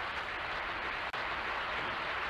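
Studio audience applauding on a television game show, a steady wash of clapping heard thin through the TV set.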